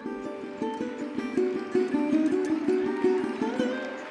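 Sarod plucked in a fast melodic run of short notes, with a slide up in pitch near the end.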